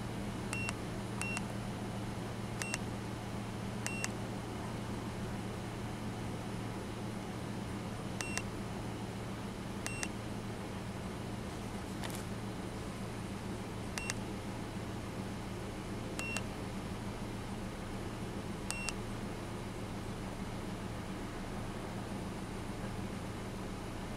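Topdon OBDCAN Plus handheld scan tool beeping briefly each time a button is pressed, about nine short high beeps at irregular intervals, over a steady low hum from the idling engine.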